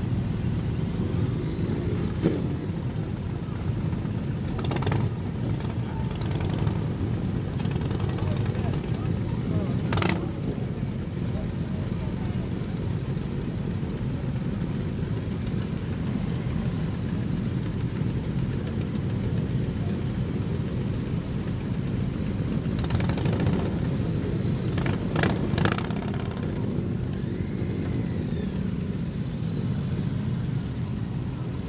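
Engines of a slow-moving column of many motorcycles running together, making a steady low noise, with a few short sharp sounds about 5, 10, 23 and 25 seconds in.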